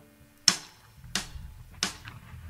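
Three sharp, evenly spaced clicks about two-thirds of a second apart, a count-in for a live band's song, with faint notes ringing under them.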